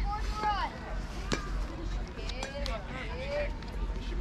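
Spectators at a youth baseball game calling out in short bursts of voice, with one sharp knock about a second in.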